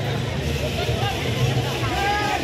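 Dense crowd noise: many voices talking and calling out at once over a steady low rumble.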